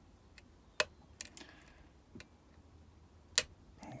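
Small metal clicks from a lock pick working the pin tumblers of a 5-pin Medeco high-security cylinder: a few faint ticks and two sharp clicks, about a second in and near the end. The picker takes the last of them for pin five setting at the shear line.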